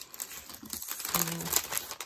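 Clear plastic bags of leftover diamond-painting drills crinkling and rustling as they are handled.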